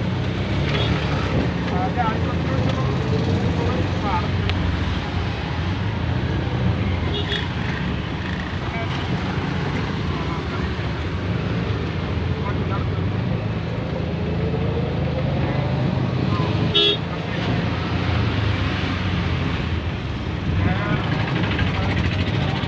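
Road traffic: a steady low engine drone with road noise, broken by short vehicle horn toots about seven seconds in and again near seventeen seconds.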